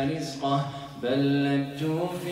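A man's voice reciting the Qur'an in melodic tajweed chant: a drawn-out phrase, a short breath just before a second in, then a long note held level.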